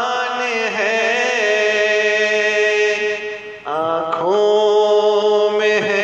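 Devotional Urdu chant: a voice holding long, steady, wordless notes, with a short dip and a sliding change to a new pitch about three and a half seconds in.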